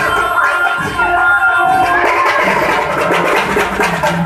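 Street procession music: large barrel drums beating amid a dense crowd, with a held high melody line over them.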